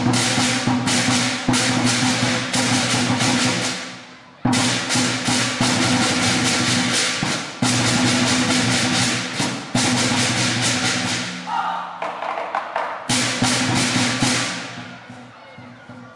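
Chinese lion dance percussion: a large lion drum beaten fast with crashing hand cymbals, the ringing of the cymbals hanging over the beat. The music cuts off for a moment about four seconds in, thins out near twelve seconds, and dies away near the end.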